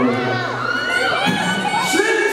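Concert crowd of fans screaming and cheering, many overlapping high-pitched shrieks.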